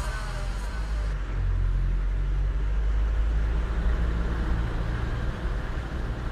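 A car engine running with a low, steady rumble.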